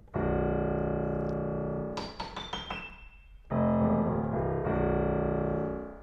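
Grand piano played to contrast registers: a low chord in the bass is held for about two seconds, then a few quick high notes, then another low bass chord held until near the end.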